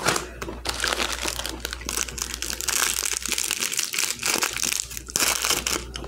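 Clear plastic packaging of Ferrero Rocher chocolates crinkling as it is handled and opened, a steady crackle.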